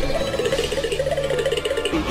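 Music playing, a dense steady soundtrack with no speech.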